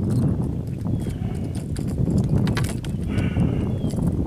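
Wind rumbling steadily on the microphone, with a few light knocks and clicks while a fish is being landed by hand, and a short high-pitched sound about three seconds in.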